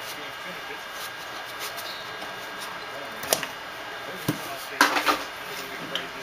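A cardboard trading-card box being handled: two light knocks in the middle and a short rustle about five seconds in.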